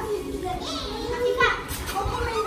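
Young children's voices chattering and calling out as they play, high-pitched and lively.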